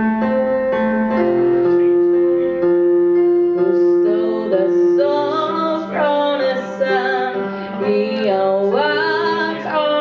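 A woman singing solo into a microphone over piano accompaniment, holding long notes and sliding up in pitch twice in the second half.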